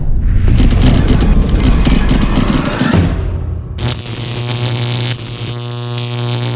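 Logo-intro sound design: a loud rumbling, crackling boom for about three seconds, then a fainter rush and a held synthesized tone near the end.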